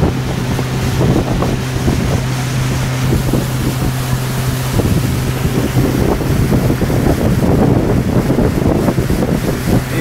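Motorboat under way: its engine runs with a steady hum, while wind buffets the microphone and water rushes past the hull. About halfway through, the steady engine hum fades into a rougher rushing noise.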